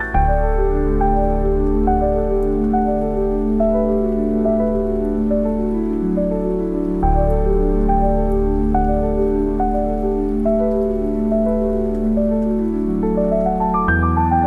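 Slow, gentle solo piano: held low chords with a melody of single notes over them, the chord changing about halfway through and a rising run of notes near the end, mixed with a steady rain sound.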